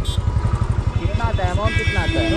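Motorcycle engine idling at a standstill, a steady, even low pulse of about ten beats a second.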